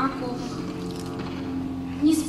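A woman's voice through a stage microphone, drawing out one long held sound on a steady pitch while reciting a poem, over a faint low hum.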